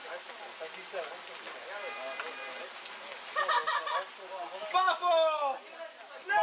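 People's voices, low and talk-like at first, then loud yells about halfway through, with a couple of shouts that fall in pitch near the end.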